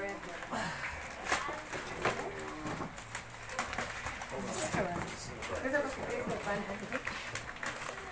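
Gift-wrapping paper crinkling and tearing as a large wrapped present is pulled open by hand, in many short irregular crackles, with quiet voices underneath.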